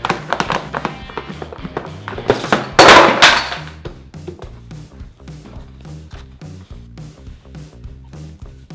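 Background music with a steady beat. Over it, a few sharp knocks in the first second and one loud bang about three seconds in: a baby slapping his hands on a plastic high-chair tray.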